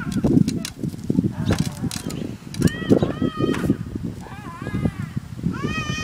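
A toddler's high-pitched squeals and babbling: a few short wavering calls, one about halfway through and another near the end, over wind rumbling on the microphone.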